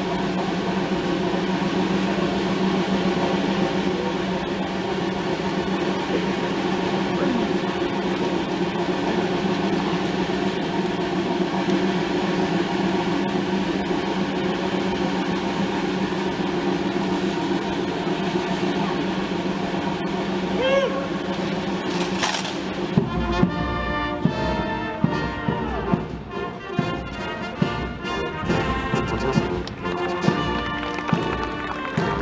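A steady murmur of crowd voices, then about 23 seconds in a military brass band strikes up a march with a regular beat, over the sharp stamping of guardsmen's boots in step.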